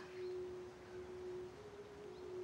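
Faint held pure tone on the film soundtrack. A slightly higher tone takes over about one and a half seconds in.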